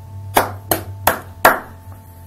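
Four sharp hand claps, evenly spaced at about three a second.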